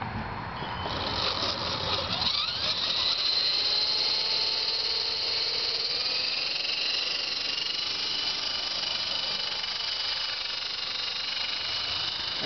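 The twin brushless motors of an E-Sky Big Lama coaxial RC helicopter are spooling up the rotors. The whine climbs in pitch over the first couple of seconds, then settles into a steady high-pitched whine.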